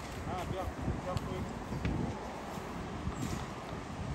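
Low background voices talking over a steady outdoor rumble, with a few light clicks scattered through.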